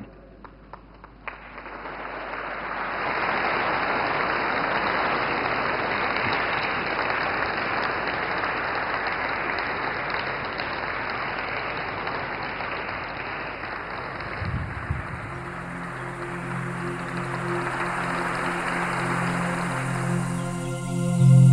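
Audience applauding: the clapping swells over the first two or three seconds and then holds steady. Late on, soft low music comes in under the applause.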